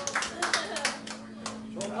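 A small audience clapping, dense at first and thinning to a few scattered claps in the second half, as the applause dies down after the song.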